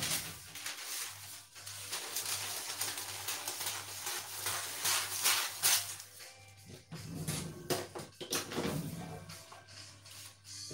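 Baking paper rustling and crinkling as it is unrolled and handled, in uneven crackly spells with a brief lull past the middle.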